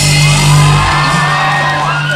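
A live rock band with electric guitars and bass holding one long sustained chord at the end of a song, the bass dropping out about halfway through, with whoops and shouts from the crowd over it.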